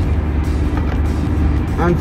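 Steady low rumble of a pickup truck's road and engine noise heard inside the cab while driving; a man's voice starts singing a word near the end.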